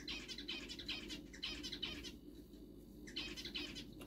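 Pet birds chirping and chattering in a quick run of short, high calls, with a brief lull about two seconds in.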